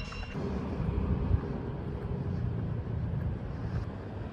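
A steady low rumble of vehicle noise.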